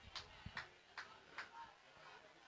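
Near silence with faint, evenly spaced ticks, about two or three a second.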